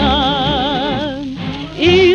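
A woman's singing voice holds one long note with a wide, even vibrato over the song's accompaniment, fades out about a second and a half in, and the next sung phrase starts near the end.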